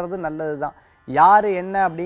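A man speaking Tamil, with a short pause a little under a second in.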